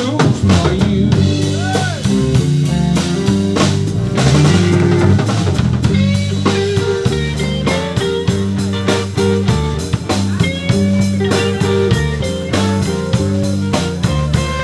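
Live blues band playing an instrumental passage: drum kit keeping a steady beat under electric bass and electric guitar.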